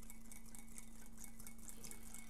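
Quiet kitchen room tone: a steady low electrical hum with faint, scattered light clicks and clinks.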